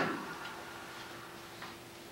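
Quiet room tone: an overhead projector's fan hums steadily, with a few faint, irregular ticks. A louder sound is fading out in the first moment.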